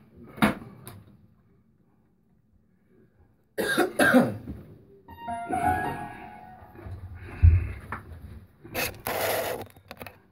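A man coughing in short bursts: about half a second in, around four seconds in and again near the end. Between the coughs come a few scattered instrument notes and a deep thump.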